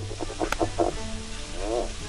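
California red-legged frog calling, a quick run of short low clucking pulses followed near the end by a longer pulsed grunt, over background music and the hiss of a field recording.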